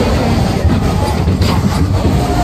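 Matterhorn Bobsleds roller coaster car running fast along its tubular steel track: a loud, steady low rumble with a few faint clacks.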